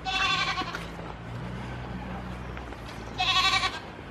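Goats bleating: two high, short calls, one right at the start and another about three seconds in, each under a second long.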